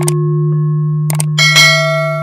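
Intro sound effects: a sustained bell-like tone, with short mouse-click sounds at the start and about a second in, then a bright bell chime joining about one and a half seconds in.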